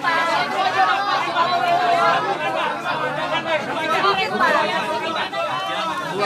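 A crowd of people talking over one another: dense, overlapping chatter.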